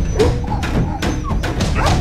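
Dogs whimpering and yelping in a few short cries over music with a steady drum-like beat.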